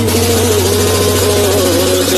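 Loud steady drone: a low hum under a slightly wavering held tone, with hiss across the top.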